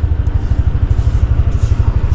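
A small engine running close by with a steady low putter, about a dozen beats a second.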